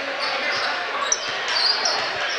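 Basketball being dribbled on a hardwood gym floor over the steady chatter of the crowd in the bleachers, with a few short high sneaker squeaks from about a second in.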